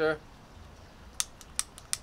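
A small handheld lighter struck about five times in quick succession, sharp dry clicks with no flame catching: the lighter fails to light.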